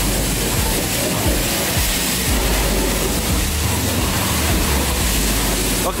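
High-pressure wash lance spraying water onto a motorcycle: a loud, steady hiss of spray that cuts off abruptly just before the end.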